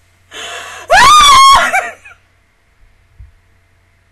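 A woman gasps sharply, then lets out a loud, high-pitched squeal that rises, holds for about half a second and trails off, an emotional reaction.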